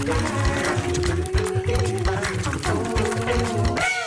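Music with a steady low beat and long held notes.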